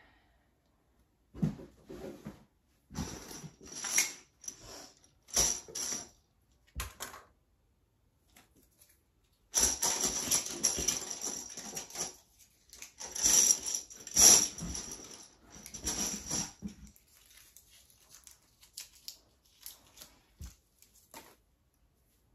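Small plastic toys clattering and rustling as they are handled and rummaged through in a cardboard box, in separate short bursts at first, then a longer stretch of continuous rummaging in the middle, thinning to a few clicks near the end.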